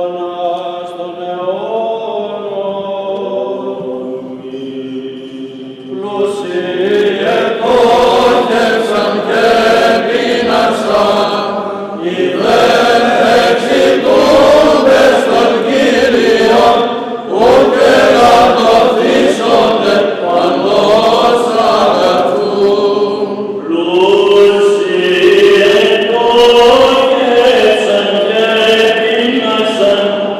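Greek Orthodox Byzantine chant sung by a group of voices during the blessing of the loaves at vespers. It is quieter for the first few seconds and becomes fuller and louder from about six seconds in.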